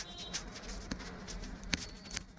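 Faint, irregular taps and scratches of a stylus writing on a tablet screen, over a low steady hum.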